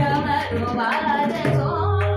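Woman singing a natya geet in Raag Todi, her voice gliding and wavering, over tabla accompaniment keeping ektal, with deep bass-drum strokes under the voice.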